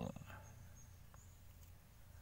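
Near silence: low room hum, with a few faint high-pitched chirps in the first second.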